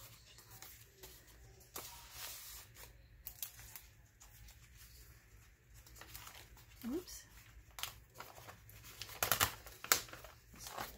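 Paper rustling and page handling as the pages of a spiral-bound paper journal are turned and folded back, with soft scattered rustles and a few sharper paper snaps near the end.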